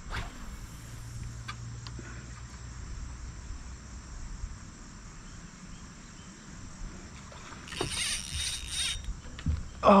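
A steady, high chorus of crickets and other insects. Near the end a loud, noisy rush lasts about a second, while a large fish is being fought on the rod just before the line breaks.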